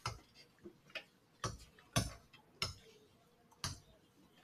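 A pen stylus tapping on a tablet screen, about six sharp, irregularly spaced clicks as dots and letters are put down.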